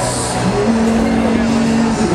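Live blues-rock band playing loud on an outdoor stage: electric guitar and vocals with a long held note coming in about a third of the way in, and a cymbal wash at the start.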